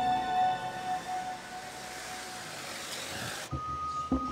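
Background music from the programme's score. A held note fades out, then a swelling whoosh of hiss builds and cuts off abruptly about three and a half seconds in. A new music cue with a steady high tone and a low beat starts at that point.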